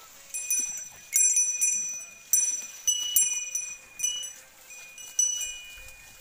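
Metal bells on an Ongole bull's neck collar ringing in irregular clusters of clear, high strikes, each dying away, as the bull moves its head.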